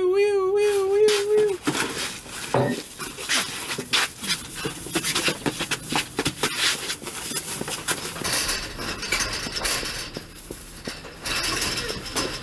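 A voice holds one long, wavering yell for about the first second and a half. It is followed by a long run of scuffling: sharp knocks and metallic rattling against the chain-link fence of a dugout.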